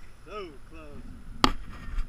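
A brief high voice sound, then a single sharp click about one and a half seconds in, the loudest thing heard.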